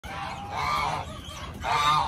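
Domestic geese honking: two calls, about a second apart.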